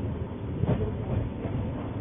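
Steady low rumbling noise without speech, in a pause between the speaker's words.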